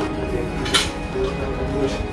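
Background music playing, with two sharp clinks of a metal fork or spoon against a plate, one just under a second in and one near the end.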